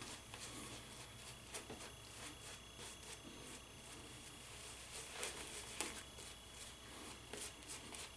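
Shaving brush swirling lather over a six-day beard: faint, irregular bristly scratching and squishing.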